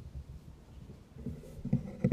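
Faint rustling and low knocks of handling noise at the lectern, with a louder bump near the end.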